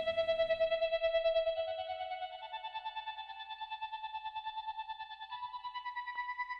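A high, vocal-like keyboard synthesizer line playing slow sustained notes. One long held note glides up in small steps to a higher note about five seconds in, over a faint low rhythmic pulse.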